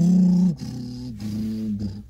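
A man's drawn-out vocal sound made through pursed lips, a held low note that is loudest for the first half second, then drops a little in pitch and softens.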